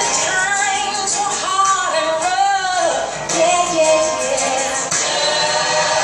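Recorded gospel song played over a church loudspeaker: a woman sings lead over choir backing, holding a wavering note about two and a half seconds in.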